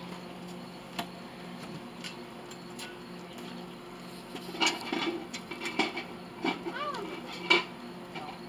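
Metal tongs clanking against a hot crucible and furnace as the crucible of molten metal is gripped and lifted out. The clanks come in a quick run over the second half, the loudest near the end, over a steady low hum.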